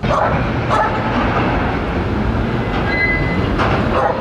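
Steady, loud noise of a railway station platform with trains and vehicles around, with a few short sharp knocks about a second in and near the end.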